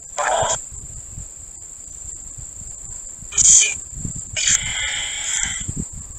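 Spirit box sweeping radio stations: three short bursts of radio static and clipped sound fragments, the longest about a second long near the end. Crickets chirr steadily underneath.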